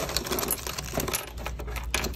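Plastic-wrapped medicine packets and ampoules being handled and shuffled: plastic rustling with a run of small, irregular clicks and clinks.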